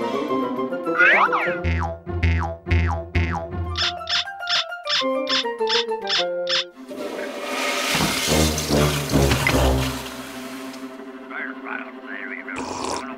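Bouncy cartoon score of short plucked notes, with a springy boing effect about a second in. From about seven seconds in, a loud rushing noise runs over the music for about four seconds.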